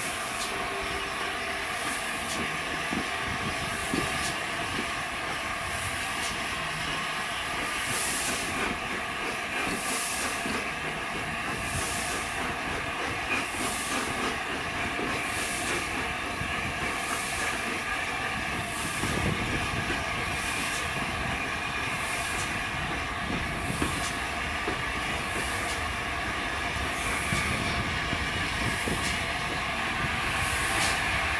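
Steam locomotive 60009, an LNER A4 Pacific, rolling slowly with a steady hiss of steam. A soft rhythmic pulse about once a second runs through the hiss from about eight seconds in.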